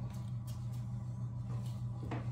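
Steady low electrical hum, with a few faint clicks and knocks as a person settles at an electric piano.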